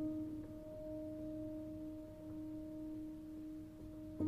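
Soft instrumental background music: one note held and slowly fading, with no new notes played.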